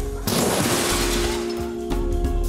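A loud crash of objects smashing down into a large bin heaped with discarded artworks, starting suddenly a moment in and dying away over about a second. Sustained music notes come in under it.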